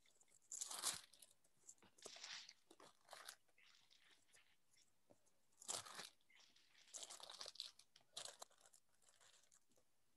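Faint, irregular rustling and crinkling of paper book pages being leafed through, in about six short bursts, as a passage in a Bible is looked up.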